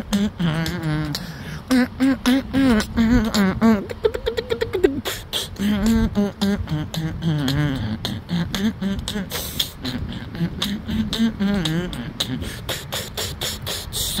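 A man's wordless vocal performance, beatboxing: rapid mouth clicks and pops in a rhythm with hummed, pitched voice tones gliding up and down.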